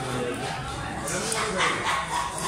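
A cleaver blade scraping and slicing along a fish's rib bones as a boneless fillet is cut away, in short strokes near the end. Voices carry in the background.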